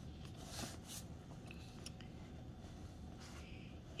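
Faint rustling of printed paper sheets being slid and repositioned over one another, a few soft brushes about half a second in and again near the end, over a low steady room hum.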